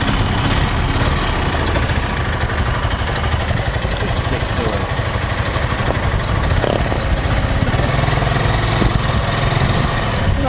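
Open dune buggy's engine running steadily while driving in town, with road and open-cabin noise.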